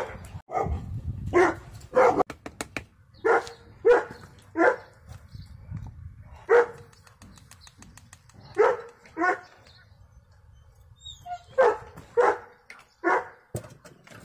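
Dogs barking: about a dozen single barks with irregular gaps, the longest gap about two thirds of the way through. A low rumble runs under the first half.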